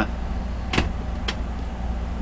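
A steady low background hum with two short clicks, a little under a second in and again about half a second later.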